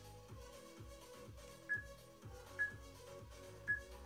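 Background music with a steady beat, with three short high beeps about a second apart in the second half: an interval timer counting down the last seconds of a work interval.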